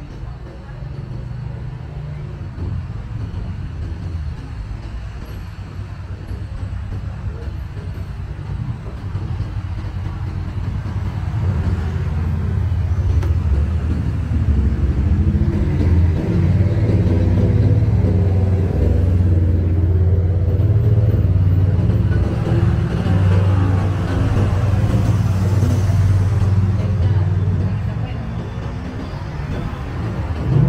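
A motor vehicle's engine running close by in street traffic: a low, steady rumble that grows louder from about ten seconds in and stays loud through the second half, with people talking in the street.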